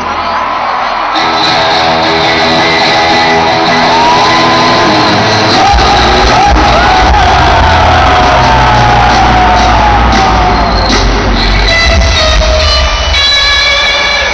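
Live rock music played through a stadium PA: an electric guitar solo with held and sliding, bent notes, joined by a heavy low bass and drum part about six seconds in.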